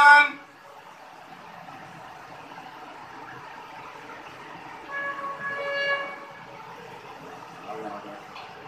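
A loud held tone breaks off right at the start, leaving a faint background murmur; about five seconds in, a steady horn-like tone sounds for about a second.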